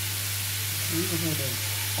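Straw mushrooms with lemongrass and chili sizzling in hot oil in a frying pan as they stir-fry: a steady hiss, with a constant low hum underneath.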